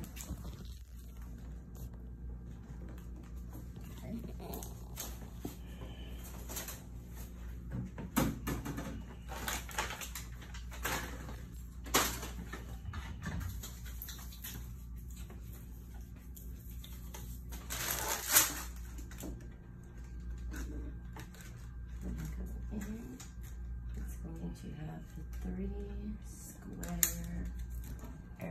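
Plastic packaging of medical supplies being handled: intermittent crinkling, rustling and light knocks, with a sharp knock about twelve seconds in, a longer, louder rustle around eighteen seconds and a short sharp click near the end. A steady low hum runs underneath.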